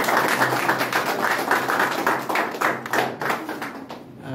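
A small group of people applauding with hand claps, fading away near the end.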